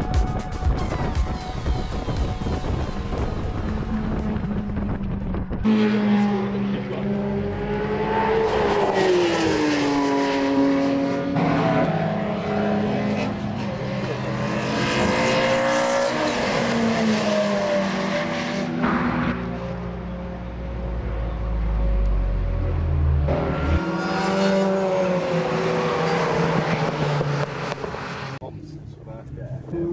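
Track-day car engines at racing speed. For the first few seconds, an open-top Mazda MX-5 runs hard on track, heard from inside with wind noise. From about six seconds in, cars are revving and passing trackside, their engine notes rising and falling in pitch.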